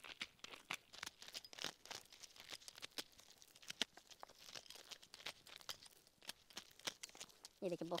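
Dried maize kernels being scraped off a cob with an old spoon-like hand tool: a quick, irregular run of faint crackling clicks as the kernels snap loose and fall onto a pile of kernels.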